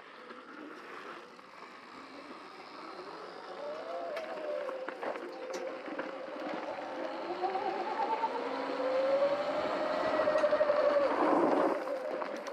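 Electric motors of Sur-Ron electric dirt bikes whining as the riders pull away, several pitches rising and falling with speed. A rushing noise beneath grows louder toward the end.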